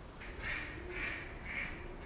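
A duck quacking on the river: a run of short quacks about half a second apart, three of them loudest.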